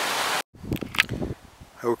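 Steady rush of a snowmelt creek cascading over rocks, cut off abruptly less than half a second in. After the cut, faint wind with a few soft knocks and rustles of the camera being handled.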